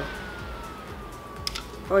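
Small rechargeable desk fan running, its motor whine falling steadily in pitch as it drops to a lower speed setting. A light click comes about one and a half seconds in.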